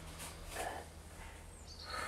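Quiet room tone, then a slow breathy exhale begins near the end: a person breathing out through the mouth during a deep-breathing exercise.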